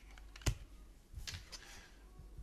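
A sharp click about half a second in, then a few softer taps and rustles: small handling sounds on a tabletop, likely tarot cards being handled.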